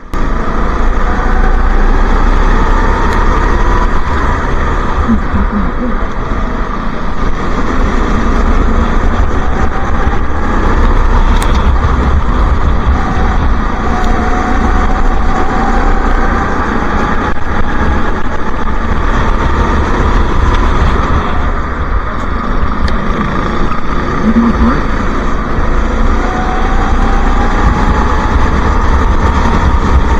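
Go-kart engine heard from onboard at race pace, its pitch repeatedly rising and falling as it accelerates and lifts through the corners, with the engines of the karts just ahead mixed in and wind rush on the microphone.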